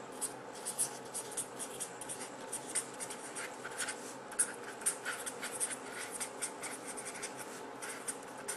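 A pen writing in quick, short scratchy strokes, several a second, over a faint steady room hiss.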